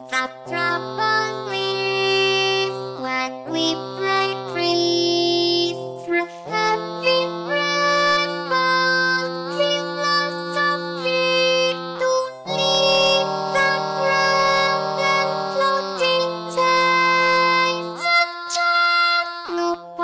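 Alter/Ego singing synthesizer (Marie Ork voice) singing English lyrics, "the trouble is when we break free, through having rambled philosophic… and chart new points of reference", in long held notes that glide from pitch to pitch, over held low chords. It starts right at the beginning, out of silence.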